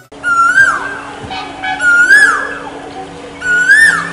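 A bird's call repeated three times, about every second and a half, each call a short loud note that rises and then falls in pitch, over a steady low drone.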